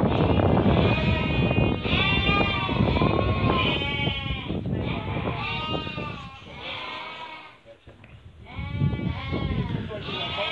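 A flock of sheep packed in a barn pen, bleating: many overlapping calls one after another, with a brief lull about eight seconds in.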